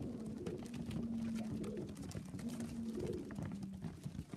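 Tippler pigeons cooing, low held coos overlapping one another, the longest starting about a second in, over a steady scatter of sharp taps from the flock pecking grain off the loft floor.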